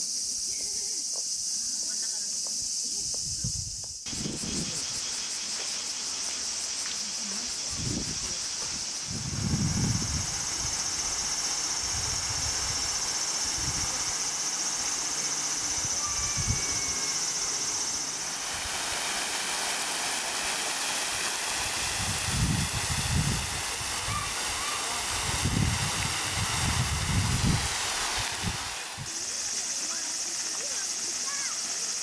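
Park fountains spraying and splashing, with a steady high buzz of cicadas over it. The water hiss grows louder from about a third of the way in, and again from about eighteen seconds until shortly before the end.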